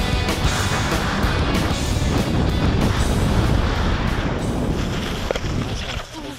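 Background rock music soundtrack.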